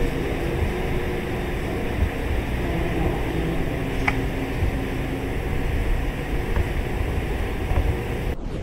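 Steady hiss and low rumble of a boosted recording, in which a faint, indistinct sound is presented as an unexplained voice that nobody heard at the time. A single light click comes about four seconds in.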